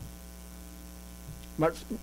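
Steady low electrical mains hum through a pause in speech; a man's voice starts speaking near the end.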